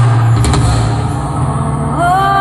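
Live band's instrumental backing: a held low bass note with a sharp percussive hit about half a second in.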